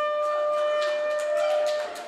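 A horn-like wind instrument blown in one long held note that breaks off near the end, reached by a quick run of rising notes. Faint scattered clicks sound behind it.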